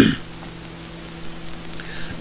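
The tail of a cough right at the start, then only a faint steady electrical hum with hiss: the recording's room tone.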